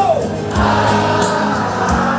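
Live band playing loudly with a singer, a sung note sliding down in pitch at the start and drum hits under the held chords.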